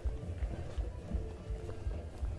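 Bulgarian folk music played in the street, carried by a quick, heavy low beat, with short held melody notes over it and voices in the background.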